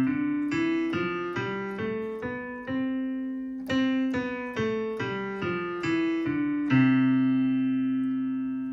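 Digital piano playing a C major scale one note at a time, up an octave from middle C and back down, at about two notes a second. It ends on a long held C.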